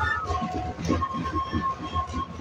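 Traditional Andean band of wooden flutes and drums playing: held, reedy wind notes over a steady drum beat, with crowd voices underneath.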